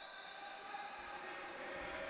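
Faint, steady background noise of an indoor sports hall: an even low hiss with no distinct knocks or calls standing out.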